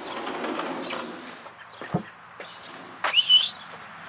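A sliding screen door rolling open, a short thud, then a loud whistle that rises and holds its pitch for about half a second: a person whistling to call a cat.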